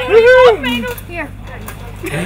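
A person's loud excited shout, its pitch rising and then falling over about half a second, followed by a moment of brief chatter and then quieter.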